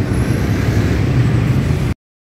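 Steady outdoor traffic noise from the road, with a low rumble and no distinct events. It cuts off abruptly just before the end.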